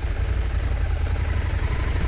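KTM 790 Adventure's parallel-twin engine running steadily at low revs as the motorcycle rolls slowly forward.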